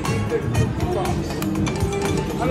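Lightning Link slot machine playing its Hold & Spin bonus-feature music and jingles, over casino voices in the background.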